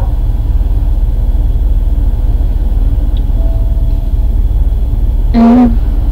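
Steady, loud low rumble of background noise running under the recording, with a short vocal sound from the woman about five seconds in.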